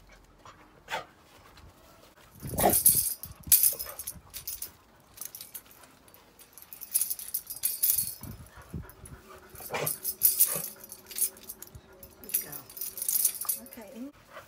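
Dogs whining and yipping with excitement, with a long thin whine through the second half. A handheld tambourine is shaken in four short bursts of jingling.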